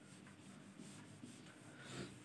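A marker drawing on a whiteboard: a series of faint, short strokes.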